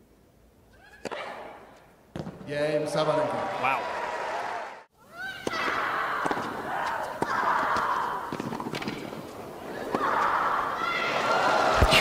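Tennis match sound: sharp ball strikes and a player's loud grunts and cries, then crowd cheering and applause that swells near the end.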